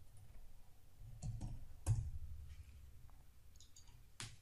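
A few scattered computer keyboard keystrokes, short sharp clicks with the loudest about two seconds in and a small cluster near the end.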